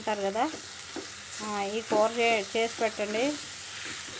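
Amaranth (thotakura) leaves sizzling in an aluminium kadai while a wooden spatula stirs them, with a voice speaking over it in two stretches.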